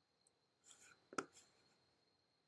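Near silence with faint computer-mouse handling: a soft rubbing of the mouse moving, then a single sharp click a little over a second in.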